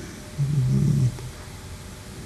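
A man's brief low hum, a hesitation "mmm" between phrases, starting about half a second in and lasting well under a second.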